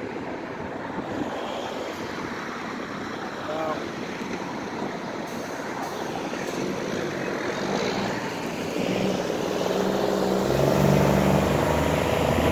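Heavy construction equipment engines running across the work site, a steady noisy drone that grows louder through the clip, with a steadier engine hum coming in about two-thirds of the way through.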